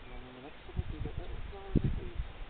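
An insect buzzing briefly past the microphone, a steady drone for about half a second. It is followed by low rumbling thumps on the microphone, the loudest just before the end.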